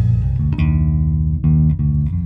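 Five-string electric bass played loud, a few plucked notes changing about once a second over a constant low rumble. Its unplucked strings are left ringing unmuted, giving a muddy rumble.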